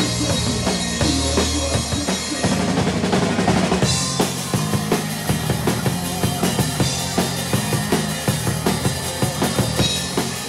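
Live rock band playing, heard close to the drum kit: loud drums with bass drum and snare hits over sustained electric guitar and bass. The beat settles into an even, regular pattern from about four seconds in.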